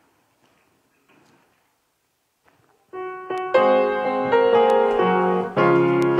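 A few faint rustles, then about three seconds in a piano begins the introduction to a hymn, playing chords that ring on.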